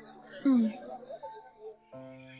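A short, breathy sigh about half a second in, its pitch falling, over soft background music.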